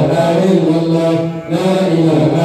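A man's voice chanting an Islamic religious chant into a microphone, holding long melodic notes, with a short breath about one and a half seconds in before the next phrase starts.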